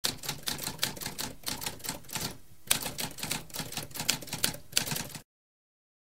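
Typewriter typing: a rapid run of key strikes, several a second, with a brief pause about halfway through, stopping about five seconds in.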